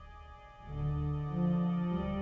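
Church pipe organ playing live: a low pedal note held under sustained chords, with louder notes coming in about a second in and stepping upward in pitch.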